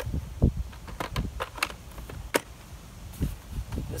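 An EGO 56-volt battery pack being picked up and slid into a cordless chain saw: several sharp, irregularly spaced clicks and knocks.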